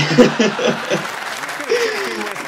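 Studio audience laughing and applauding, with a person laughing over it.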